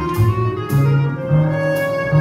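Jazz orchestra playing live: a low bass line with brief high strokes from the drums, and a long held note coming in about halfway.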